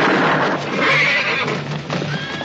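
A horse neighing loudly, its call peaking about a second in, in a western film's soundtrack.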